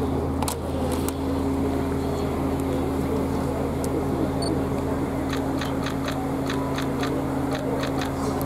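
A steady low engine hum made of a few constant tones, with a run of light clicks in the second half.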